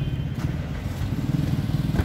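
A motor vehicle engine running in street traffic: a steady low rumble that swells slightly in the second half.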